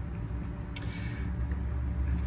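Steady low hum with one faint short tick about three quarters of a second in.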